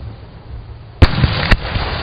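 Fireworks exploding overhead: two sharp bangs about half a second apart, the first a second in and the louder, each followed by a rumbling echo.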